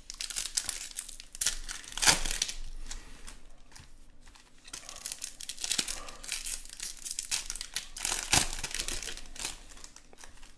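Plastic wrappers of 2020 Bowman Chrome hobby card packs crinkling and tearing as they are opened by hand. There are two sharp, loud tears, about two seconds in and again about eight seconds in.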